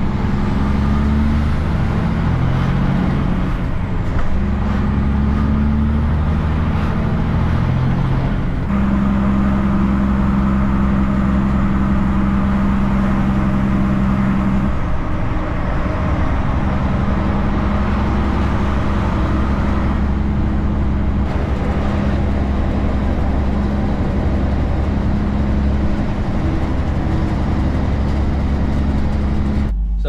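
Kenworth K200 cabover truck's Cummins diesel engine pulling along the road, with tyre and road noise. The engine note steps in pitch a few times in the first several seconds, then holds steady.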